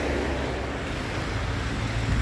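Steady rushing noise of a running mountain stream and car tyres on a wet, slushy road, with a low rumble underneath.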